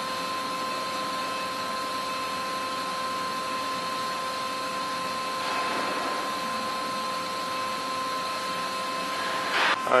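Okamoto IGM-15NC CNC internal grinder running: a steady machine whine made of several fixed tones over an even hiss, swelling briefly a little past halfway.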